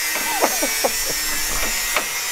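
A hand wrench working a Nissan S14's steering tie rod, a steady rasping and rubbing of metal on metal as the tie rod is turned and tightened, with a few short squeaks in the first second.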